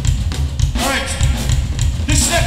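Hardcore punk band playing live through a club PA, with pounding drums and heavy bass. About a second in, the singer starts shouting into the microphone over the band.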